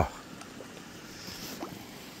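Quiet outdoor ambience at a koi pond with the pump and waterfall switched off: a faint steady hiss with a few faint, very brief sounds.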